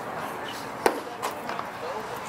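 A pitched baseball striking the catcher's leather mitt: one sharp pop a little under a second in, followed by a fainter knock, over the murmur of voices.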